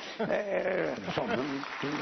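A man's brief laughing voice, rising and falling in pitch for about a second, then a soft haze of background noise.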